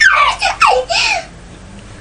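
A young girl laughing: a few high bursts that fall in pitch in the first second, then fading away.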